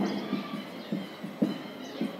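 Marker pen writing on a whiteboard: a run of short, irregular knocks and scrapes as each stroke of the characters meets the board, one firmer tap about one and a half seconds in.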